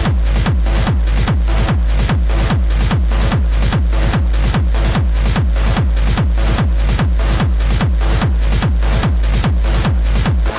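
Hard dance electronic track at full intensity: a heavy kick drum hits at a fast, steady pace, each kick falling in pitch, under a dense synth layer.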